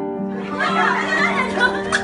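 Background music plays on while, from about half a second in, a group of people shout and cheer excitedly over an office balloon-popping game, with a sharp click near the end.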